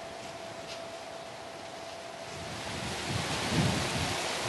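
Wind blowing on the microphone, a steady rushing noise that grows louder in the second half, with low rumbles near the end.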